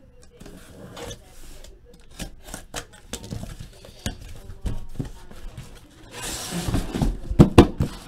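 Cardboard shipping case and card boxes being handled, with a run of light knocks and taps. About six seconds in comes a louder stretch of cardboard scraping and sliding with several thumps as the case is pulled up off the stacked boxes.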